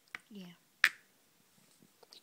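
A single sharp click a little under a second in, like hard plastic toy figures knocking together as they are handled, with a fainter click just before.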